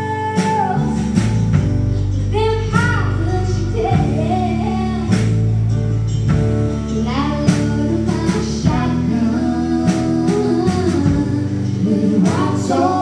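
Live band playing a song: a woman singing lead over electric guitar, electric bass and a small drum kit of snare and kick drum struck with sticks, with steady drum hits through.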